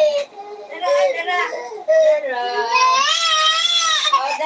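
A toddler crying: short fussy whimpering bursts, then one long high-pitched wail that rises in pitch over the last second or two.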